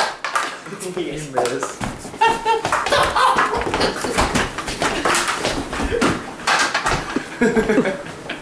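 Young men laughing and yelling while they roughhouse, with scattered thumps and knocks of bodies hitting furniture.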